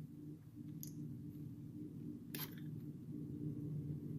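A couple of small metal clicks as a screwdriver works on the parts of a metal survival bracelet being taken apart, a faint one about a second in and a sharper one a little past halfway, over a steady low hum.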